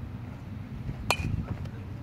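A baseball bat hits a ground ball once, about a second in: a single sharp crack with a brief metallic ring. Steady low wind rumble runs under it.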